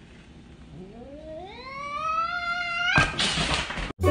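Domestic cat giving one long low yowl that climbs steadily in pitch, then breaking into a loud hiss for about the last second: the warning sounds of a cat that feels threatened.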